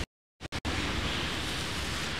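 The audio cuts out completely for under half a second, with a couple of clicks, then a steady hiss of rain and traffic on a wet city street.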